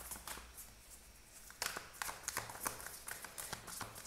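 A deck of oracle cards being shuffled by hand: a faint run of irregular card flicks and slaps, sparse at first and busier from about halfway through.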